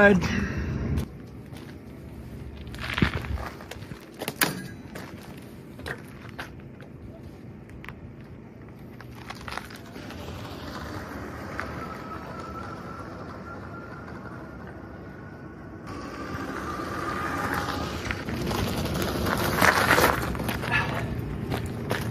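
ENGWE X24 electric fat-tire bike ridden away over gravel and back: a few knocks and crunches as it sets off, a faint electric motor whine rising slightly while it is far off, then tyre noise on gravel and motor whine growing louder as it returns, loudest near the end.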